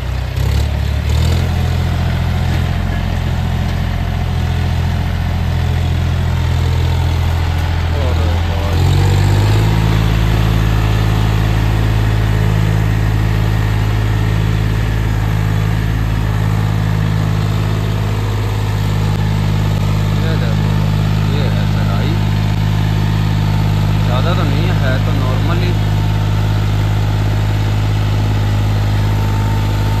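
John Deere 5050D tractor's three-cylinder diesel engine running under heavy load, hauling a trolley of about 190 quintals of soil. It picks up revs about a second in and steps up again about nine seconds in, then holds high revs with a brief dip near the middle. Near the end it is pulling up a ramp hard enough to lift its front wheels.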